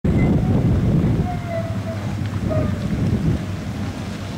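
Wind buffeting the microphone of a moving handheld camera: a heavy, uneven low rumble, a little louder in the first second and a half.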